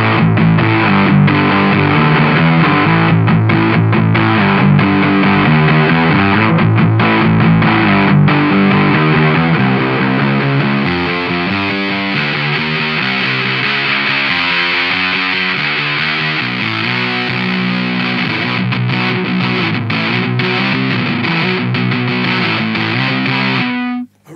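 Electric guitar played through a Doomsday Effects Cosmic Critter Fuzz pedal and a miked 4x12 Greenback cabinet: loud, heavily fuzzed riffing that eases a little in level about ten seconds in and stops abruptly near the end.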